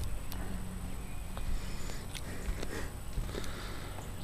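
Light handling clicks and small knocks as a small silver camcorder on a short metal tripod is set down on a wooden picnic table, over a low steady background.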